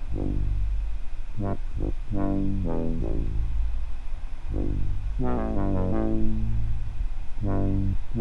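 Synth bass from a TAL-U-NO-LX plugin playing a low bass pattern, with quick higher solo notes added in its gaps; a fast run of stepping notes comes a little past the middle.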